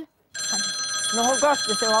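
A telephone ringing on an outgoing call: one long steady ring starting a moment in, with a woman's voice briefly over it.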